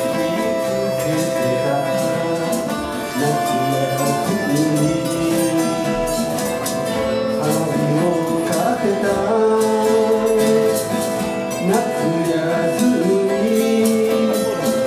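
A man singing a Japanese folk song while strumming an acoustic guitar, a solo live performance with voice and guitar together.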